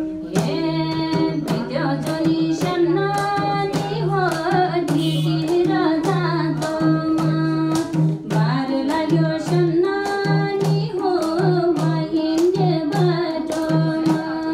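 A woman singing a Nepali folk song live, accompanied by a madal, the two-headed barrel hand drum, played with both hands in a fast, steady rhythm; its low bass stroke booms on and off with the beat.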